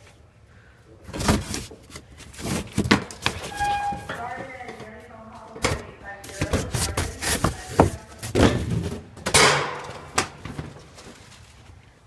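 Cardboard boxes being bumped, pushed and scraped with a string of irregular thumps and knocks as a person squeezes through a tight gap between them on wire-decked storage shelving.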